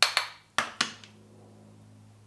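Four sharp taps in two quick pairs within the first second: a makeup brush knocked against a pressed-powder compact to shake off excess contour powder.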